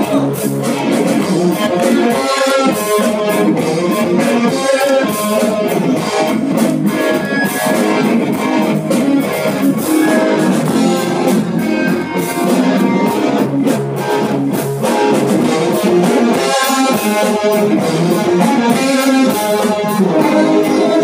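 A live rock band playing the instrumental opening of a song: electric guitar, bass guitar and a drum kit with cymbals, loud and steady through the stage amplification.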